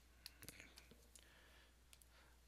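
Near silence: faint room tone with about half a dozen small, scattered clicks.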